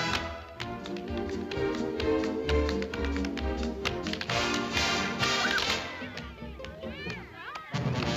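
Tap dancing, shoes clicking sharply on a hard floor, over a film-musical orchestra. About six seconds in the band thins and goes quieter, with high sliding pitches, before coming back in loud near the end.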